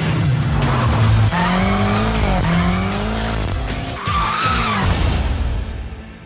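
BMW M5's twin-turbo V8 revving up and down as the car slides, with tyres squealing, the loudest squeal about four seconds in. The sound falls away just before the end.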